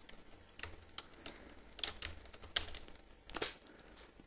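Computer keyboard typing: quiet, irregular key presses, with a few louder strokes in the second half.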